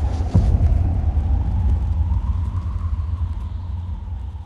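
Deep, steady low rumble of film-trailer sound design, with a brief whoosh about a third of a second in, slowly dying away.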